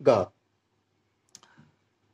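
The tail of a spoken word, then a pause of near silence broken by a single faint click about a second and a half in.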